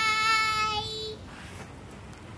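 A young girl's voice holding one long, steady sung note, which ends about a second in; faint room hiss follows.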